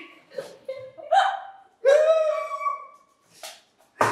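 Two people laughing helplessly in short bursts: breathy, gasping intakes and high-pitched squeals of laughter, with brief pauses for breath.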